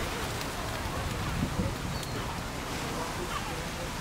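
Steady outdoor waterfront city ambience: a low rumble and even wash of noise with distant voices of passers-by murmuring, and a couple of soft knocks about one and a half seconds in.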